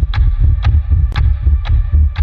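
Suspense soundtrack effect: a loud, deep bass pulse beating about twice a second, with a sharp tick on each beat.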